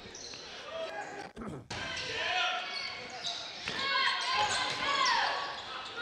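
A basketball being dribbled on a hardwood gym floor during live play, with scattered players' and spectators' voices echoing in the hall.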